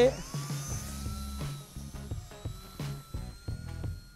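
Small electric motor and propeller of a Radiolink A560 RC aerobatic plane spinning up with a rising whine, then holding a steady high whine that creeps slightly higher as the plane hovers nose-up in vertical mode. Background music plays underneath.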